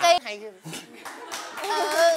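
A quick run of claps lasting about a second, between a spoken word at the start and voices coming back near the end.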